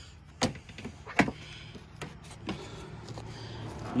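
Plastic wheel-arch liner being pulled back by hand, giving a few sharp plastic clicks and snaps, the loudest about half a second and a little over a second in, with lighter ones later, over a steady low hum.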